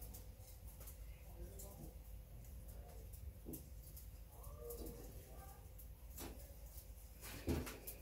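Quiet knife work: a knife slicing fat and silver skin off raw beef short ribs on a wooden cutting board, with a few faint clicks and knocks. Faint bird calls in the background.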